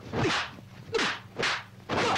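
Dubbed kung fu film swish sound effects for punches and kicks, coming in quick succession about every half second.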